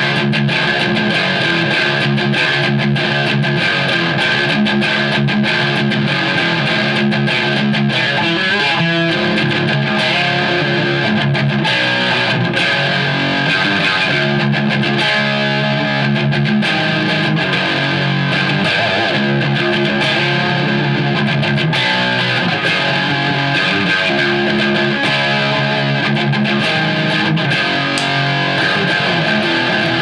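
Chapman ML2 electric guitar on its coil-split bridge pickup, played without a break through an early-90s Mesa Boogie Dual Rectifier amp set to high gain, with heavy distortion.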